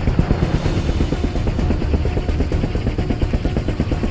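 A landed aircraft's engines running loudly, a low rumble with a rapid chopping pulse.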